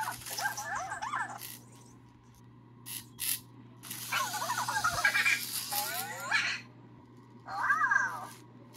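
High-pitched squeaky chattering, its pitch bending up and down quickly, in three bursts: one at the start, a longer one about four to six and a half seconds in, and a short one at the end.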